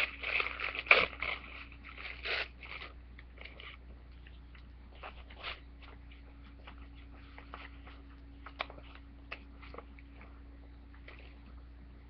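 Tissue paper crinkling and rustling under hands as torn pieces are laid and pressed flat, busiest in the first three seconds with the loudest crackle about a second in, then only a few faint scattered crackles.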